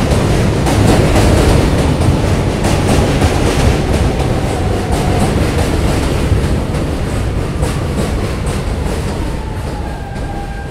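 R160B subway train with Siemens propulsion pulling in and braking: loud wheel rumble with rail-joint clicks, and a motor whine that falls in pitch near the end as the train slows.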